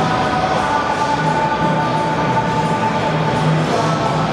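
Steady, loud din of a large indoor hall, with a few held tones running through it.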